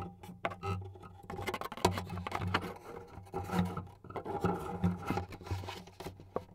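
Handling noise of an iSolo clip-on wireless soundhole microphone being moved and clipped into an acoustic guitar's soundhole: irregular rubs, scrapes and small knocks, with the guitar body and strings ringing faintly and low at times.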